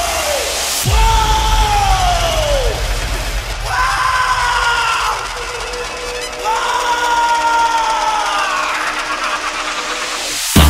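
Electronic Marathi DJ remix intro: a deep bass throb under long held calls that each slide down in pitch at the end, with crowd-like yells mixed in.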